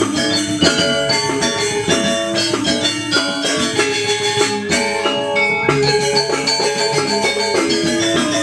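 Balinese gamelan-style music: rapid runs of ringing notes on struck metallophone keys over percussion, steady throughout.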